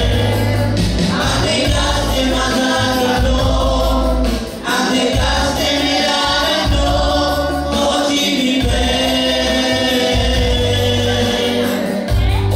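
A congregation singing a gospel worship song together over loud amplified backing music with a heavy bass. The singing breaks briefly about four and a half seconds in.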